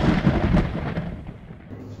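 A loud thunder-like rumble, a dramatic boom sound effect, dying away and nearly gone by the end.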